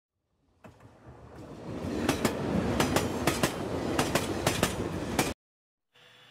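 A train rolling along, a steady rumble with its wheels clicking over rail joints, the clicks often in quick pairs. It fades in about half a second in, builds over the next second or so, and cuts off abruptly just after five seconds.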